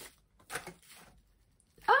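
Plastic bubble wrap and cardboard rustling as a wrapped item is slid out of a small card box, in two brief, faint rustles.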